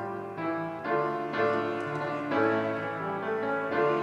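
A congregation singing a slow, meditative hymn with piano accompaniment, in long held notes. It is being sung as a round, so the voices overlap in harmony.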